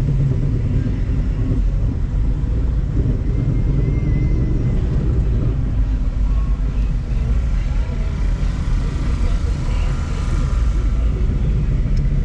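Steady low rumble of a car engine at idle, heard from inside the cabin while the car creeps along slowly.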